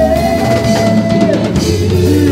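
Live gospel worship band music with a drum kit playing, and one long note held for about a second and a half from the start.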